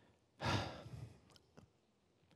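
A man sighing: one breathy exhale lasting under a second, then a faint click.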